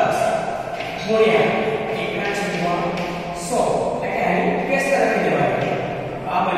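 A man talking continuously.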